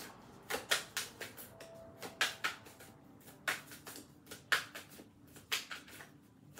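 Deck of tarot cards being shuffled by hand, the cards snapping and slapping against each other in a series of irregular sharp clicks, a few a second, with short pauses between.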